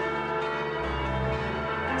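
Church bells ringing in a bell tower, their tones steady and overlapping.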